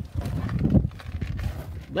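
Irregular low thumps, rumble and rustling: a phone microphone being handled as someone climbs into a car's driver's seat.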